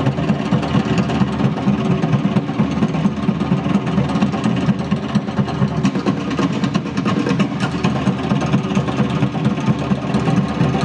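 Tahitian percussion orchestra playing a fast, dense, unbroken drum rhythm on wooden slit drums and barrel drums, the strikes so rapid they run together into a continuous rattle.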